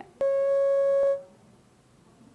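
A single steady electronic telephone-line beep, about a second long, starting with a click: the phone link to the field reporter has not connected.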